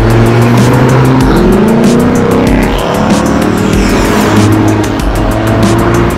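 Cars driving past one after another on a road, loud and close, their engine notes rising several times as they accelerate.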